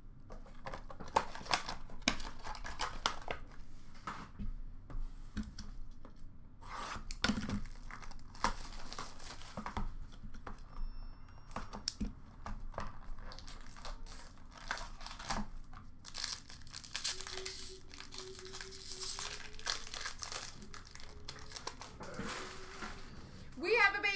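Plastic shrink wrap being torn and crinkled off a hockey card box, with irregular rustling, crackling and sharp clicks of the cardboard box and foil packs being handled.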